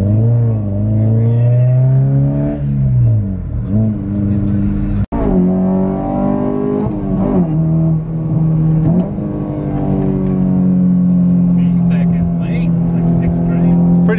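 Honda Civic Si (FG2) 2.0-litre four-cylinder heard from inside the cabin, pulling through the gears: the engine note climbs, drops at each upshift and climbs again, then settles into a steady cruise about ten seconds in. The sound cuts out for an instant about five seconds in.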